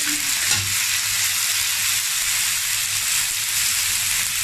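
Clams stir-frying in hot oil in a steel wok: a steady sizzling hiss, with a metal spatula scraping and turning the shells.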